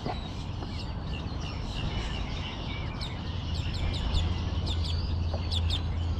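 Small birds chirping, a dense run of short high chirps that thickens in the second half, over a low steady rumble.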